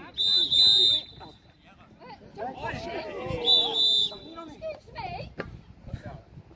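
Referee's whistle blown twice: a double blast just after the start and a shorter double blast about three and a half seconds in, each a steady shrill tone. Voices call out on the pitch between the blasts.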